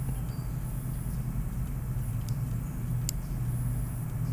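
Steady low background hum with no other activity, and one faint short click about three seconds in.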